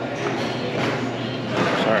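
People talking in the background of a busy lobby, with a man saying "sorry" close to the microphone near the end.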